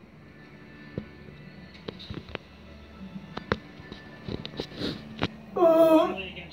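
Ice hockey broadcast playing from a television in a small room: scattered knocks and clicks over faint arena sound, then a loud pitched call or shout starting about five and a half seconds in.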